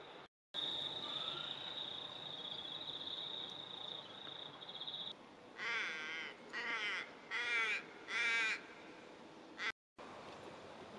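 Rural outdoor ambience: a steady high-pitched buzz for the first half, then a bird cawing four times, each call drawn out and wavering. The sound cuts out briefly just after the start and just before the end.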